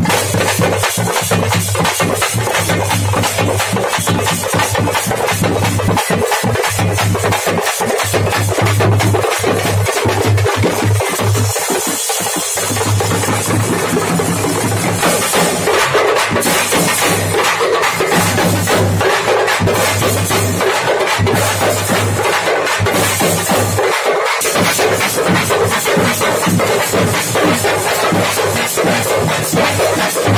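A street drum band playing fast, loud, continuous drumming on hand-held frame drums, the strikes packed closely together, over a steady low hum.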